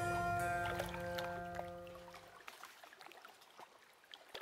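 Closing music of held notes fades out and ends about two and a half seconds in, leaving faint water lapping.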